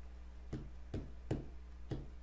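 Four faint, short clicks, roughly half a second apart, over a steady low electrical hum.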